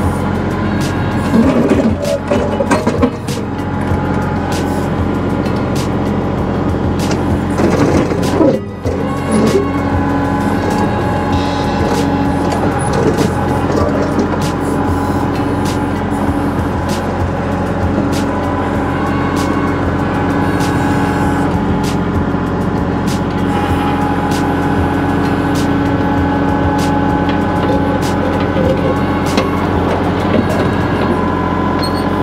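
Kubota BX compact tractor's three-cylinder diesel engine running steadily under hydraulic load as its backhoe digs, with repeated knocks and clanks of the steel bucket against broken concrete and soil.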